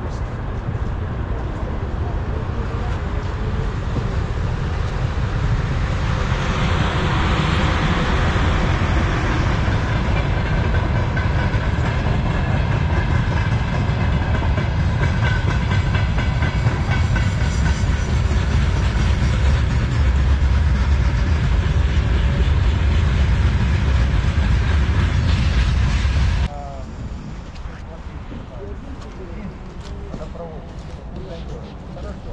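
A train passing on the rail line: a loud, steady rumble of wheels on rails that builds over the first few seconds and stops abruptly near the end.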